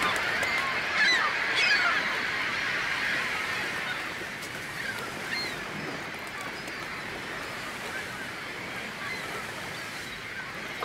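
A flock of gulls calling, many short overlapping cries over a steady wash of noise; the calls are densest in the first couple of seconds, then thin out and grow quieter.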